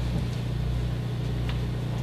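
A steady low electrical-sounding hum under faint room hiss, with a faint click about one and a half seconds in.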